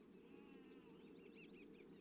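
Near silence with faint birdsong: a quick run of short chirping notes.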